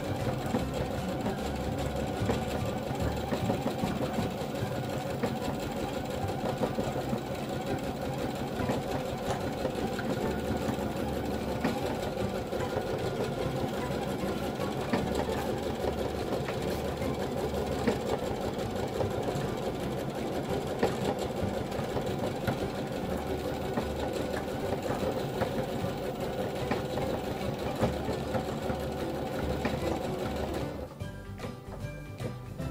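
Bernette Chicago 7 embroidery machine running a design, its needle stitching in a rapid, steady rhythm as the hoop carries the fabric under it.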